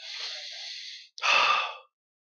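A man sighing close to a headset microphone: a long breath, then a louder breath out a little past a second in.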